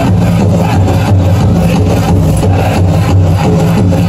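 Powwow drum and singers: a steady, loud drum beat under a group singing, the music the dancers are dancing to.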